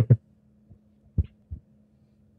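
Two short, low thumps about a third of a second apart over a faint steady hum, in a pause between speech.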